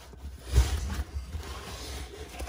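Fabric of a camouflage MOLLE dump pouch rustling and scraping as a Glock pistol magazine is pushed into its tightly packed side pocket, with a soft thump about half a second in.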